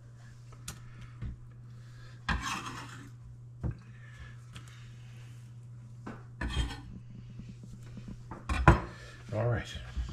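Clinks and knocks of kitchen utensils on a stainless steel skillet and the countertop, with a brief scrape about two seconds in and the loudest knock near the end. A low steady hum runs underneath.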